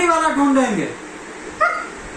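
Siberian husky vocalising, the drawn-out 'talking' call of the breed: one call about a second long that rises and then falls in pitch, then a shorter call about one and a half seconds in.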